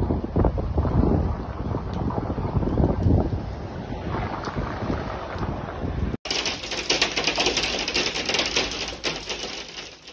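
Gusty wind buffeting a phone microphone with a low rumble for about six seconds. After an abrupt cut comes a dense, steady hiss full of rapid pattering: a heavy storm downpour.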